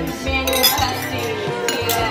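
Wine glasses clinking together in a toast, over background music.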